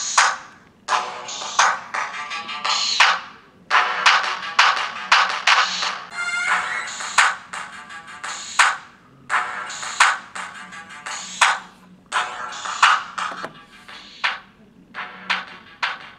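A song played through a smartphone's built-in loudspeaker: first a Samsung Galaxy S3 lying on its back, then a Google Nexus 4. The sound is thin and has little bass, and the Galaxy S3's speaker is the louder of the two.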